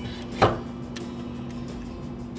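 A large plastic instant-noodle bowl set down on a table: one short knock about half a second in.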